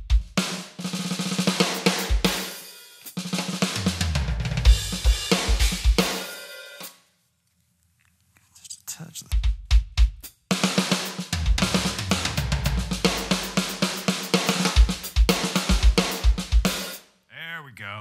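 Roland TD-25 V-Drums electronic kit played through its sound module: a rock beat with kick, snare, hi-hat and cymbals, dressed in the module's Arena reverb as the reverb level is being turned down to about 21. The playing stops about seven seconds in and starts again two seconds later.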